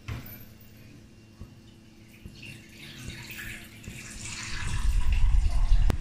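Water poured onto raw vegetables in an aluminium pressure cooker. It starts about two seconds in and grows louder, with a low rumble under it near the end.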